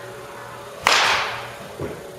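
A baseball bat striking a pitched ball: one sharp, loud crack a little under a second in, its ring fading over about half a second, followed by a softer thud just before the end.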